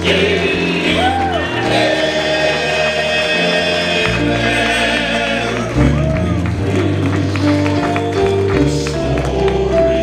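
Male gospel vocal group singing in close harmony, holding long notes, over a keyboard accompaniment with a bass line.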